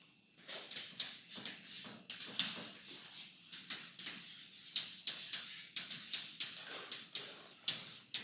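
Chalk writing on a blackboard: a quick, irregular run of taps and short scratches, several a second, with one sharper tap near the end.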